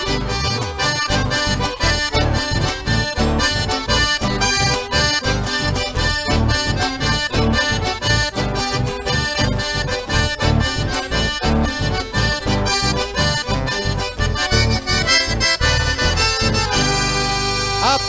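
Live chamamé band playing an instrumental passage led by accordion over a steady beat; the music stops near the end.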